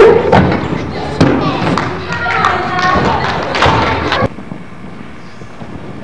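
Feet thudding onto a wooden balance beam during a gymnastics routine, several separate thumps over background music and voices in a large gym. The sound cuts off abruptly about four seconds in, leaving a low background, with one more thump at the very end.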